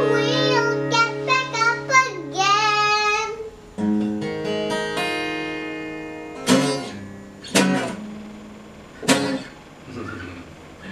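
A young girl singing with a strummed acoustic guitar for about the first three seconds; then the guitar plays on alone, a held chord followed by three single strums roughly a second apart.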